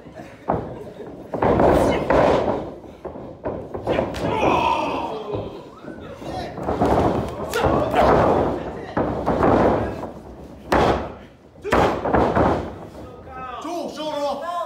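A series of heavy thuds and slams on a wrestling ring, bodies and strikes hitting the canvas, each ringing out briefly in the hall, with shouted voices between them.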